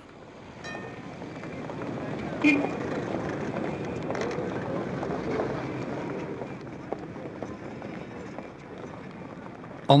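Busy street ambience of indistinct voices and traffic noise, fading in over the first two seconds and then holding steady. There is one short sharp sound about two and a half seconds in.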